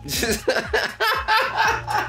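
Men laughing heartily, in several loud bursts.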